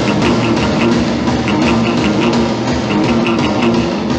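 Rock band recording of guitar over a steady drum beat, the cymbal or snare hits falling about three times a second.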